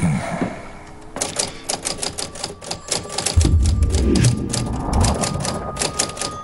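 Typewriter keys clacking in quick, irregular strokes, starting about a second in.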